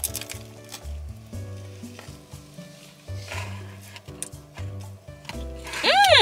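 Crackly crunching and chewing as a sourdough sandwich is bitten and eaten, a few crunches coming and going, over soft background music with a slow bass line.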